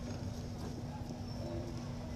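Low steady background rumble with a faint steady hum and a few faint clicks, no voice.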